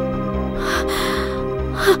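Dramatic background score: a sustained drone over a low pulsing beat, with a woman's breathy gasp about halfway through and a voice beginning to speak right at the end.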